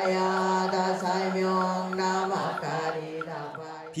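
Buddhist chanting by monks and lay devotees, voices holding long steady notes in unison.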